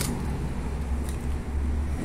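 A steady low rumble, with no clear event on top of it.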